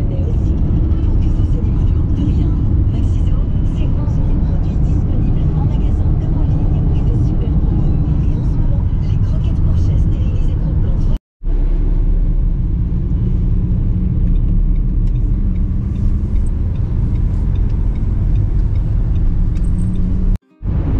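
Road and engine noise inside a Renault Captur's cabin while driving: a steady low rumble. It cuts out for a moment about eleven seconds in, then carries on as a steadier low hum.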